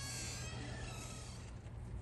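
Low, steady outdoor background rumble, with faint high-pitched tones that fade away in the first second and a few faint ticks near the end.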